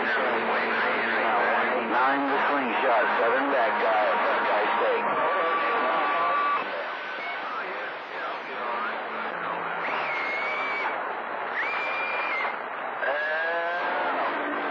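CB radio receiving long-distance skip on channel 28: several voices talk over one another through static and fading, too garbled to follow. Steady whistling tones cut in briefly in the middle and again later.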